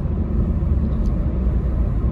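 Steady low rumble of a car driving along a highway, the road and engine noise heard from inside the moving car.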